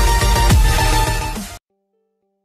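Electronic intro music with a heavy bass and a falling bass sweep about half a second in, cutting off suddenly near the end.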